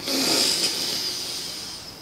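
A man's long breath out, a hissing exhale that starts sharply and fades steadily over about two seconds.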